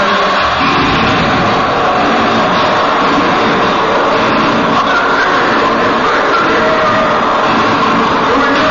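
Metal band playing live in an arena: distorted electric guitars and drums kick in about half a second in and carry on loud and dense.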